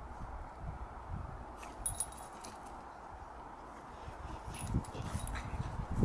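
A bullmastiff and a small French bulldog puppy playing, with brief high-pitched squeaks about two seconds in and again near five seconds, over low scuffling rumbles.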